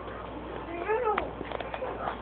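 A short high-pitched cry, about half a second long, rising and then falling in pitch, like a whine or a meow.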